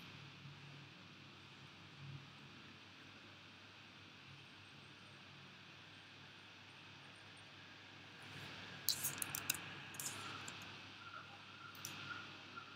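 Faint room hiss, then a quick run of sharp clicks about three quarters of the way through and a few scattered clicks after, from computer input being worked as the screen recording leaves the slideshow for the desktop.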